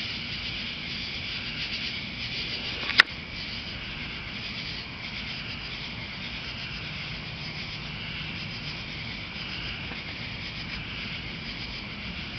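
Steady chorus of crickets and other night insects chirping, with a single sharp click about three seconds in.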